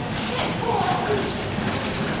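Indistinct voices, with no clear words, over a steady background din.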